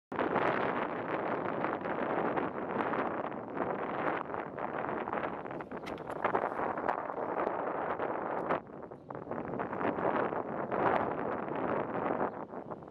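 Outdoor wind, a steady rushing hiss that rises and falls in gusts and briefly drops away about nine seconds in.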